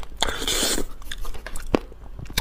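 Close-up mouth sounds of a person eating spicy raw crab: wet sucking and chewing, with a long hissy slurp starting about a quarter of a second in and scattered sharp clicks.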